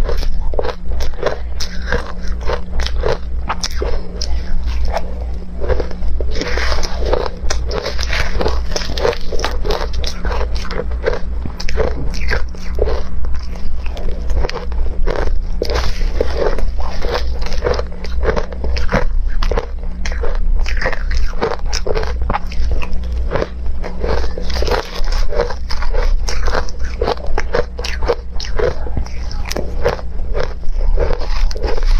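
Close-up crunching of ice chunks being bitten and chewed: a dense, continuous run of crisp crunches, over a steady low hum.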